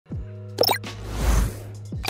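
Animated logo intro sting: electronic music over a steady low bass note, with quick bright pops a little after half a second and a whoosh that swells to its loudest about a second and a quarter in. Short downward-swooping blips mark the start and the end.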